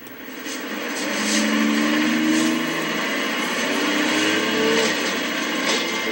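Bus interior ambience from the story app: the engine and road noise of a moving city bus, with a slowly rising engine note, fading in over the first second. It is played through a tablet's speaker.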